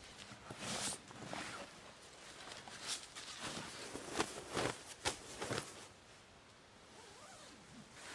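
Rustling of camping gear being handled: footsteps on dry fallen leaves and the swish of a sleeping bag and tent fabric, with a few short zip-like strokes in the middle. It is quiet for the last couple of seconds.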